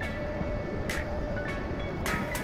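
Compact 55MT-5k excavator running, heard from the operator's seat: a steady low engine rumble with a held whine over it, and a couple of sharp clicks about one and one and a half seconds in.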